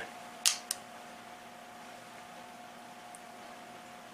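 Hammer of a stainless Marlin 336SS lever-action rifle being thumbed back to full cock: a sharp metallic click about half a second in, followed quickly by a fainter click.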